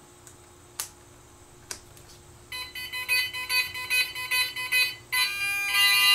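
Two clicks as the main battery connector is plugged in. Then, from about two and a half seconds in, the brushless motors' ESCs sound their power-up beep tones: a run of pulsed electronic beeps a few times a second. About five seconds in they change to a denser, steadier beep pattern as the ESCs arm.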